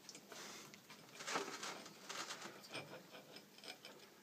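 Spherometer's metal feet scraping and clicking softly on a ground glass mirror blank as the instrument is settled and shifted by hand to read the grinding depth.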